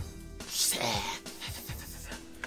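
A person's short, breathy exhale with a little voice in it, about half a second in, over faint steady background music.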